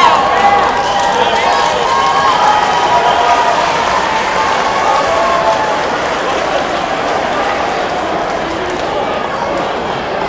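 Crowd in a large hall cheering and shouting as a cage fight ends, several voices calling out over a steady crowd noise. The calling dies down after about five seconds, leaving a somewhat quieter crowd noise.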